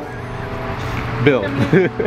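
A car going by on the street, a steady low engine and tyre noise, with a man's voice starting about a second in.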